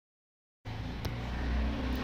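Dead silence for about half a second, then a steady low hum of background noise that grows slightly louder. A single faint click comes about a second in.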